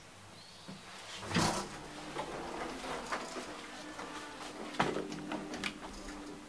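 Mechanical sounds of a 1994 KONE traction elevator: a loud knock about a second and a half in, then a run of clicks and knocks over a low steady hum.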